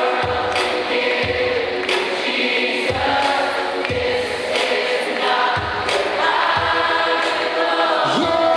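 Live Christian rock band playing a slow song, with a drum beat about once a second under sustained chords and many voices singing together, as of an arena crowd singing along.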